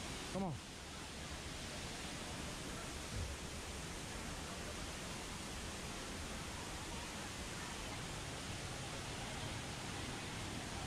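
Steady rush of a rainforest waterfall and creek, an even noise throughout. A brief voice with falling pitch cuts in just under half a second in, and a short low thump comes about three seconds in.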